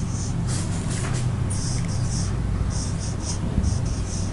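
Marker pen writing on a white board: short scratchy strokes in quick bursts as letters are formed, over a steady low hum.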